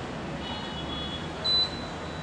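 A short, high, steady electronic beep about one and a half seconds in, after fainter high tones, over low room noise.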